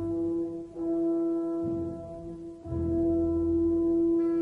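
Opera orchestra with no singing, holding long brass-led chords in three held swells. The chords break off briefly under a second in and again near three seconds in, with lower instruments joining in the second half.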